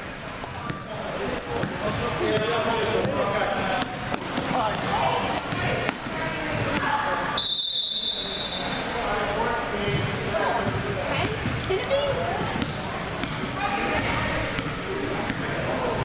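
Basketball bouncing on a gym's hardwood court amid the talk of players and spectators in a large echoing hall. A referee's whistle blows once, briefly, about seven and a half seconds in, as play is stopped.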